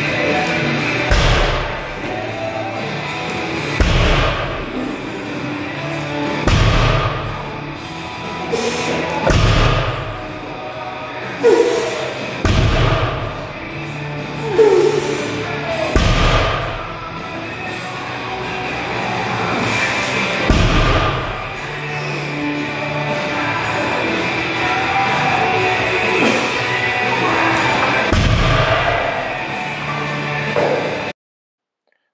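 Background music playing over a heavily loaded barbell's rubber bumper plates thudding on the floor as each deadlift rep is set down. There are eight thuds, a few seconds apart, coming further apart toward the end of the set.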